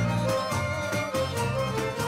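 Live Albanian folk ensemble playing an instrumental passage: held melody notes over a bass line, with a steady beat of tambourine strokes.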